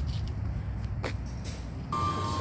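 Outdoor car-park ambience: a steady low rumble of distant traffic, with a few faint clicks.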